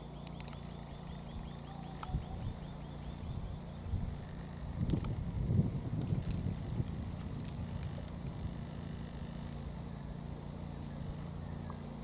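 Outdoor ambience: a fast, high chirping trill of about seven chirps a second for the first few seconds, over a steady low hum, with some rustling and faint clicks around the middle.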